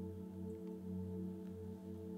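Soft background music under a pause in the talk: a steady held chord of several sustained tones, like an ambient keyboard pad.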